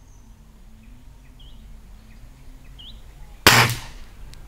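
A BSA Meteor spring-piston air rifle fires a single shot about three and a half seconds in: one sharp crack lasting a fraction of a second, the loudest thing here. Before it, faint bird chirps over a low steady hum.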